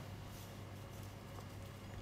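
Quiet kitchen room tone with a steady low hum and a faint light tap about one and a half seconds in.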